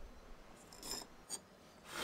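Fired ceramic plates scraping and tapping on the kiln shelf as they are lifted out of the kiln: faint short rasps, a brief tick, and a louder scrape near the end.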